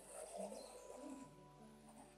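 Faint relaxing background music with bird calls mixed into it.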